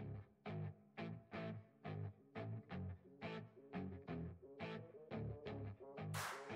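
Background music starting up: a run of short, evenly spaced notes, about two a second.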